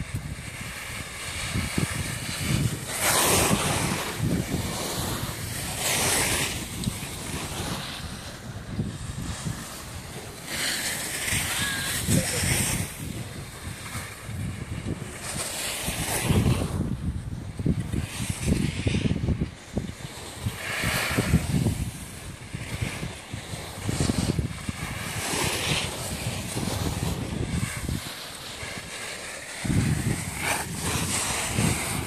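Wind buffeting the microphone of a camera carried downhill on skis, with the hiss of skis scraping across packed snow that surges every few seconds as turns are made.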